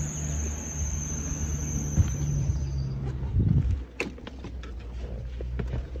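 A car engine idling with a steady low hum, joined by a thin high-pitched whine. About three and a half seconds in there is a short low swell, then a few scattered clicks and knocks.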